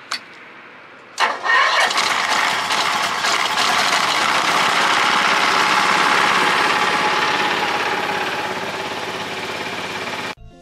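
Engine of a Mitsubishi LKV6 paper-mulch rice transplanter started with the key about a second in. It catches at once and runs steadily, being warmed up before work.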